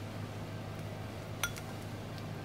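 Fingers pressing a vinyl decal onto a glazed ceramic bowl. It is quiet over a steady low hum, with one light click against the bowl about halfway through.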